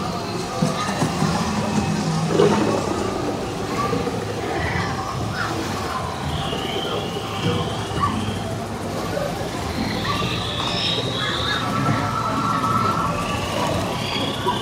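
Themed rainforest soundscape of a dark ride: recorded alien creature calls and chirps, some longer calls near the end, over soft ambient music.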